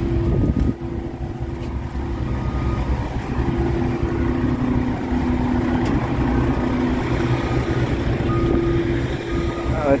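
Heavy diesel trucks idling close by: a steady low rumble with a droning hum.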